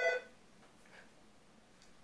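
The last of an office telephone's ring, a steady electronic tone that cuts off about a quarter second in, then near silence: room tone.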